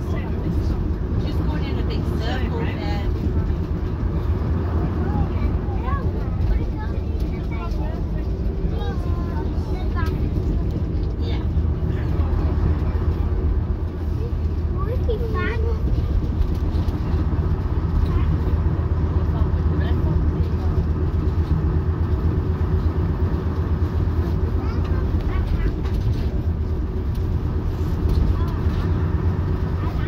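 Leyland Leopard PSU3 coach's underfloor diesel engine running on the move, heard inside the saloon as a steady low drone, with passengers chatting over it.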